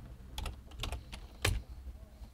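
Computer keyboard keys being typed, about six separate keystroke clicks at an uneven pace, the loudest about one and a half seconds in.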